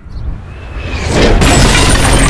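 A loud crashing noise that builds over the first second and then holds at full strength.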